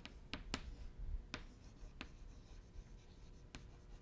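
Chalk writing on a blackboard: faint scratching, broken by a handful of sharp taps as the chalk strikes the board.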